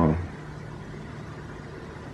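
A man's speech trails off on the end of a word, then a pause with only a faint, steady low hum and hiss in the background.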